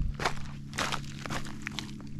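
Footsteps crunching on loose flat rocks on a lakeshore: a few crunching steps about half a second apart, with the stones shifting and clinking underfoot.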